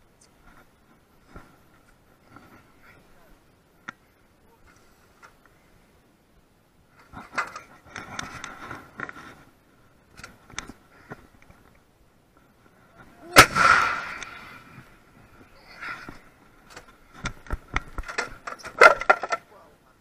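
A single loud blast about thirteen seconds in from an M777 155 mm towed howitzer firing. It is surrounded by scattered metallic clanks and knocks from the crew working the gun's breech and loading gear, which bunch up shortly before the shot and again a few seconds after it.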